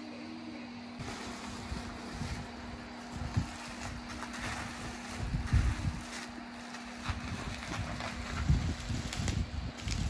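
Strong wind gusting in from outside, a loud irregular low rumble that starts about a second in and comes in surges. Bubble wrap and plastic rustle faintly as china is unwrapped.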